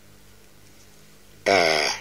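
A short pause with only a faint, steady low hum, then a man starts speaking about one and a half seconds in.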